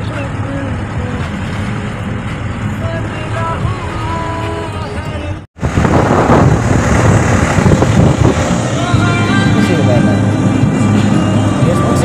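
Steady engine and road rumble heard from inside a moving vehicle. About halfway through the sound drops out for an instant at an edit and comes back louder and noisier.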